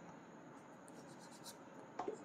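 Faint rub of a marker writing on a whiteboard, a few short strokes, the clearest about one and a half seconds in.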